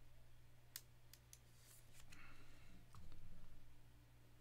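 Faint scattered clicks and a brief soft rustle of a trading card and its clear plastic holder being handled.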